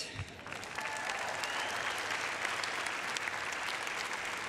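Audience applauding. The clapping picks up about half a second in and holds steady.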